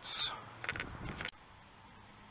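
Rustling handling noise from a handheld camera being moved, with a couple of faint clicks, ending in one sharp click a little over a second in, after which it is near silent.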